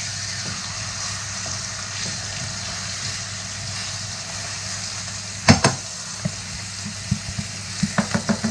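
Chicken frying in a preheated pan, sizzling steadily. A sharp clack about five and a half seconds in and a few lighter knocks near the end.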